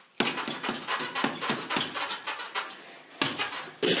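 A rapid series of punches landing on a hanging heavy punching bag, about three to four blows a second. A quieter spell follows, then louder blows near the end, with a short laugh at the very end.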